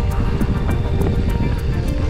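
Background music with a steady beat over the on-board rumble and rattle of a mountain bike descending a dirt trail, with wind on the microphone.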